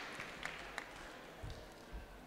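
Applause dying away to a few scattered claps, then two soft low thumps in the second half.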